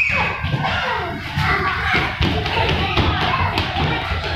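Busy thuds and taps of toddlers' feet running and stamping on a wooden floor, mixed with children's voices.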